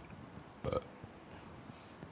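A single short belch, about two-thirds of a second in, against faint room tone.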